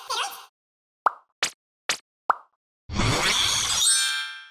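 Edited TV sound effects: a short repeating jingle stops about half a second in, followed by four quick plops, one after another. Near the end a loud whoosh-like hit fades into a bright ringing shimmer.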